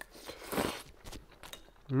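A person taking a forkful of pasta into the mouth: a short slurp about half a second in, then a few faint clicks of chewing.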